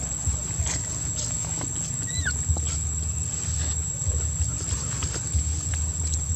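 Outdoor insect drone: a steady thin high-pitched whine with scattered soft clicks and one short squeak that rises and falls about two seconds in.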